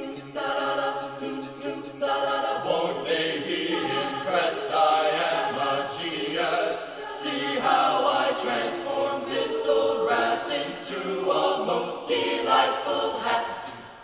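A mixed high school choir singing a cappella in several-part harmony, with crisp consonant attacks. The sound fades briefly just before the end.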